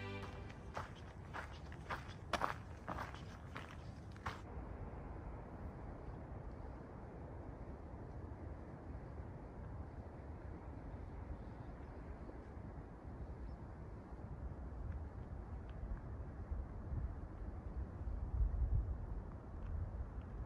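A few sharp clicks and scuffs in the first four seconds, then a steady low rumble of wind on the microphone, gusting harder near the end.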